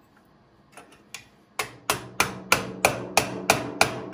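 Hammer blows on metal in a steady rhythm of about three a second, each ringing briefly, after a couple of light taps.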